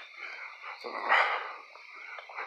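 A person's short, breathy exhale about a second in, in a pause between words.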